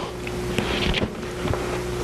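Paper being handled close to a table microphone: a brief rustle a little after half a second and a few light knocks, over a steady electrical hum from the sound system.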